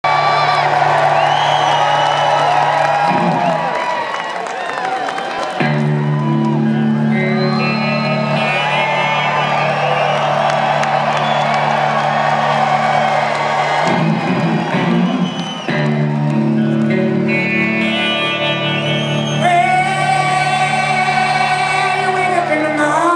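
Live rock band playing held electric guitar and bass chords through a concert PA, with two short breaks in the sustained chords, as the crowd cheers and whoops over the music.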